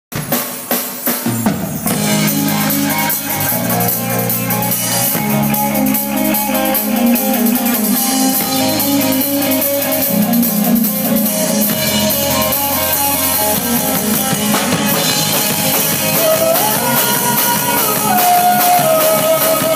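A live band playing rock-style music on drum kit, electric guitar and electric bass. A few separate drum hits come first, then the full band comes in about two seconds in and plays on steadily.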